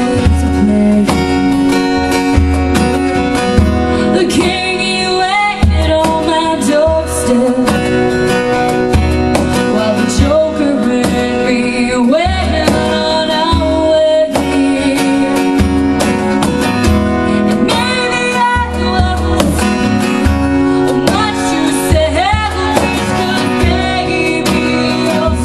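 A woman singing over a strummed acoustic guitar, amplified through a microphone, with a steady pulsing low end under her voice.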